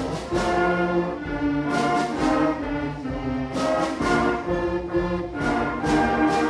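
Sixth-grade concert band playing a piece: brass and woodwinds hold sustained chords that shift every second or so, with trombones among the brass.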